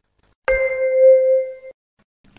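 A single chime sound effect: a bell-like ding that starts abruptly about half a second in, rings for just over a second and fades out.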